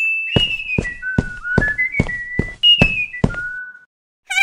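Cartoon sneaking music cue: a whistled melody, held notes stepping down in pitch, over a run of short percussive beats about two to three a second.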